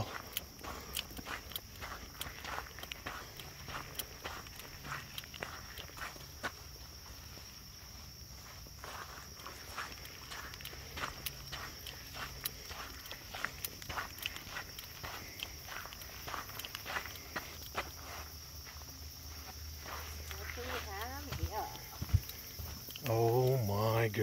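Footsteps of a person walking at a steady pace along a sandy trail, a run of short soft steps. A voice comes in near the end.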